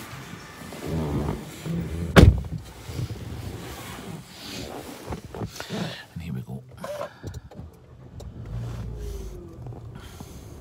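Handling noises inside a car cabin as someone moves into the driver's seat: rustling and knocks, with one sharp thump about two seconds in.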